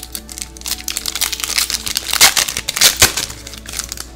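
Foil booster-pack wrapper crinkling and being torn open by hand: a dense run of crackles, loudest a little after two seconds in, with background music underneath.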